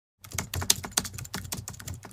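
Computer keyboard typing: a fast, uneven run of keystroke clicks, starting about a quarter second in.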